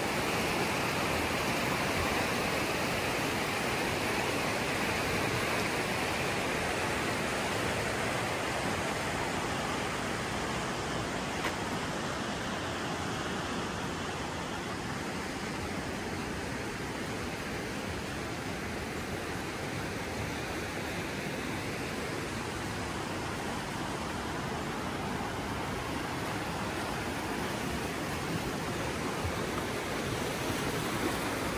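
Steady rushing of a fast glacial creek pouring through a narrow rock canyon, easing a little in the middle and growing louder again near the end.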